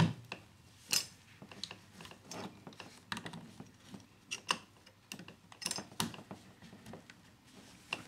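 Gloved hands pushing thin plastic control tubes into the push-fit fittings of a Surestop water valve: a scatter of small, irregular clicks and knocks from handling the tubing and valve body.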